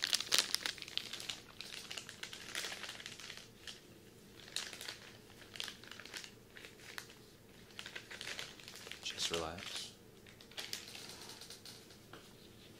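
Baby wipes and their soft plastic packet crinkling and rustling close to the microphone in irregular bursts, loudest in the first second, as a wipe is drawn out and worked around the outer ear.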